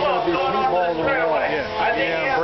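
A man's voice talking continuously, heard at a distance and with echo, like a race announcer over a public-address system; no other sound stands out.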